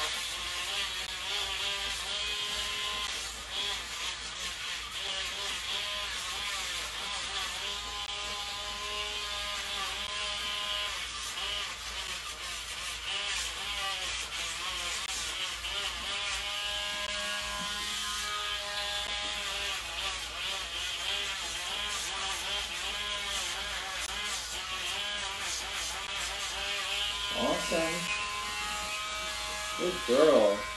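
Electric nail grinder running steadily as it smooths the edges of a dog's clipped nails, its whine dipping and shifting in pitch as it bears on each nail.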